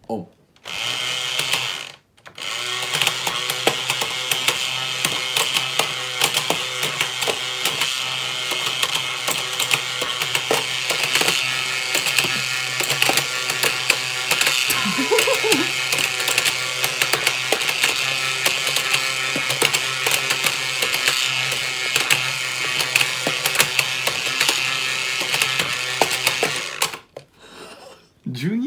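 The small battery-powered motor and gear mechanism of a paper-craft Wani Wani Panic crocodile whack-a-mole toy, running with a steady whir and a stream of clicks and rattles as the crocodiles pop in and out, mixed with taps of a small toy hammer. It starts just after switching on, breaks briefly about two seconds in, and stops about a second before the end.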